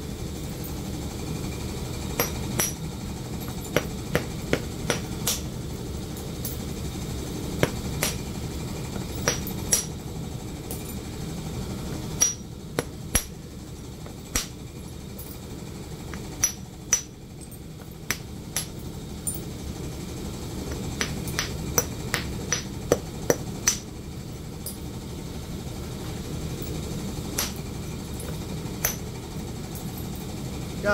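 A copper-tipped bopper striking the edge of a raw flint tab to knock off flakes (percussion flintknapping), giving sharp, irregular clicks a second or more apart with short pauses. A steady low rumble runs underneath.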